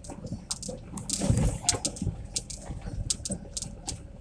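Car tyres rolling slowly over a gravelly, sandy lane: irregular crackling and popping of grit under the tyres, with a heavier bump at about one to one and a half seconds in.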